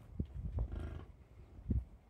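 A bison grunting: one short, low call of about half a second in the middle, with a dull thump shortly before it and a louder thump near the end.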